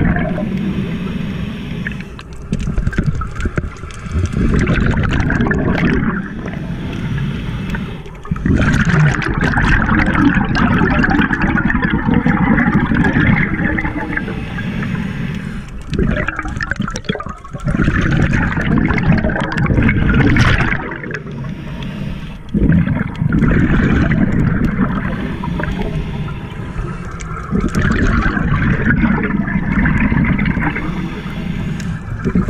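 Scuba regulator breathing heard underwater: bursts of exhaled bubbles gurgling, each lasting a few seconds, with quieter gaps between breaths.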